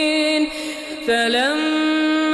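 A male reciter chanting the Quran in a melodic tajweed style. A long held note fades about half a second in; just past a second a new phrase begins, gliding up in pitch and then held steady.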